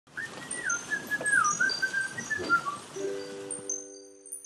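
Animated logo intro sound: a whistle sliding up and down between two pitches over a hiss, then a short held chord and high sparkling chime notes near the end.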